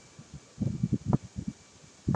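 A quick run of short scraping, rustling strokes from a paper scratch-off ticket and coin being handled. It starts about half a second in and stops after about a second.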